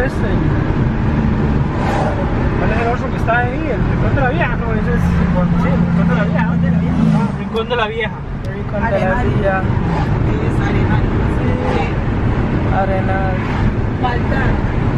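Road and engine noise inside a moving car's cabin, with a steady low drone that cuts off abruptly about seven seconds in.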